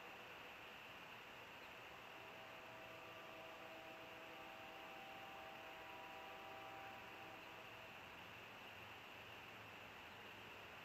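Near silence: steady outdoor background hiss from the nest microphone, with a faint distant steady drone of several held tones from about two seconds in until near the end.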